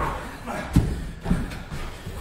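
Heavy battle rope thudding on the gym floor as it is hauled in hand over hand: a few dull thuds in the second half, about half a second apart.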